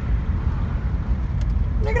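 Steady low rumble of a car driving, heard from inside the cabin, with a couple of faint clicks about one and a half seconds in. A voice starts near the end.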